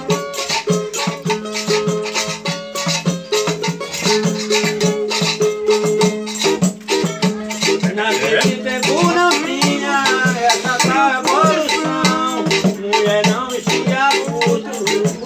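Samba played on a small guitar and pandeiros: a steady strummed beat with jingling tambourines, joined by a man singing from about eight seconds in.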